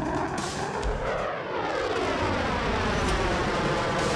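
Fighter jet flying past, its engine roar steady with a sweeping, phasing tone that slowly falls.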